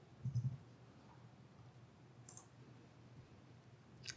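A few faint clicks from a computer keyboard as a search is typed in, with one short sharp click a little past two seconds in, over quiet room tone.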